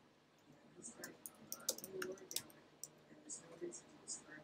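Typing on a computer keyboard: a quick run of key clicks starting about a second in, then a few scattered clicks.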